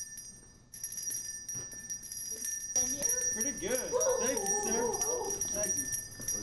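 A Salvation Army bell ringer's handbell ringing continuously with a high, steady ring, after a sudden cut in the sound just under a second in; a voice joins from about three seconds in.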